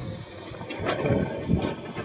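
Wind buffeting the microphone: a low rushing noise that swells and falls in gusts.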